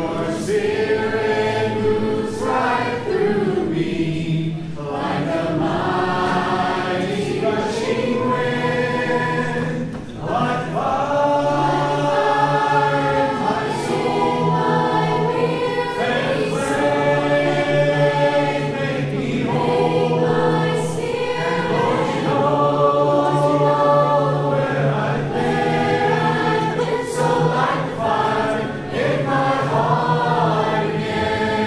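A congregation singing a slow worship song together in parts, with men's and women's voices. The phrases run a few seconds each, with long held notes.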